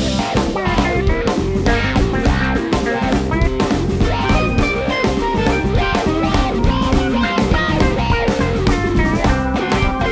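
Live rock band playing an instrumental jam: acoustic and electric guitars, keyboards, bass and a drum kit, with no singing.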